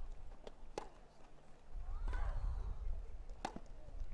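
Tennis rally on a grass court: sharp racket strikes on the ball, with a player's grunt on a shot about two seconds in, and a loud return strike about a second later.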